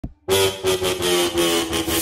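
Electronic intro sound effect: a sustained, buzzing, pitched drone that swells and dips in loudness, starting a moment in after brief silence and building toward a heavy bass drop.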